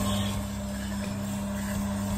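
Proaster sample coffee roaster running mid-roast, before first crack: a steady electrical hum with an even rushing noise from its motor and fan.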